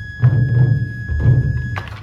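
Japanese taiko drums being struck, a run of deep repeated strokes. A steady high tone sounds over them until near the end, where there is a sharp click.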